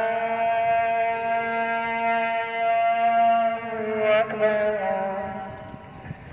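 A muezzin singing the azan, the Islamic call to prayer: one long held phrase that breaks into a wavering turn about four seconds in, then fades out near the end.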